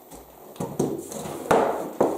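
A boxed LEGO set being handled and set down on a wooden table: a few light cardboard knocks, then a louder knock about a second and a half in.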